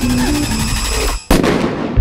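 Dramatic background music breaks off for an instant, then a single loud bang, like a shot, hits about a second in and rings away.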